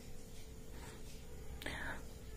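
Quiet room tone with a steady low hum, and a faint, brief breath-like vocal sound near the end.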